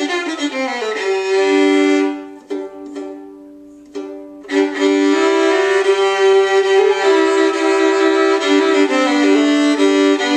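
Old Klingenthal violin, made around 1875–1880 and strung with Helicore medium-tension strings, bowed in a fiddle demonstration: a falling run into held double stops, two notes sounding together. About two seconds in the playing drops away to a few light, short strokes, then the bowed double stops resume about four and a half seconds in.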